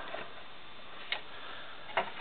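Two short, sharp plastic clicks about a second apart, from hands handling and adjusting the joints and wings of a Transformers Generations Dirge action figure, over a steady low hiss.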